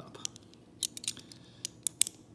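Pieces of a Hanayama Vortex cast metal puzzle clicking against each other as they are turned in the fingers, a few light clicks with the sharpest near the end.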